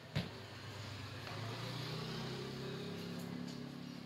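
A knock as the phone is handled, then, from about a second in, a low steady hum of a running motor.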